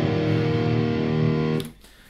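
Electric guitar sounded and left ringing, its notes held steady, then cut off abruptly about three quarters of the way through.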